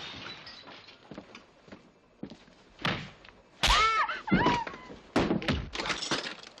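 Movie fight sound effects: scattered knocks and thuds, then a heavy blow about three and a half seconds in, followed by a man's strained grunts and cries, and more sharp blows near the end.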